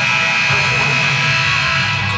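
Arena buzzer horn sounding one long steady tone for about two seconds, then cutting off, over a low crowd murmur in the gym.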